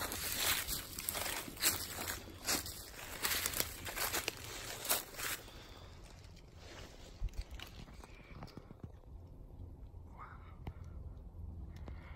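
Footsteps crunching through dry leaf litter and pine needles, with pine boughs brushing past, irregular and close for about the first five seconds, then quieter with only a few faint rustles.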